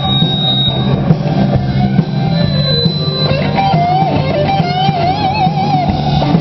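Live rock band playing: electric guitars over bass and drums, with a held, wavering lead melody in the second half.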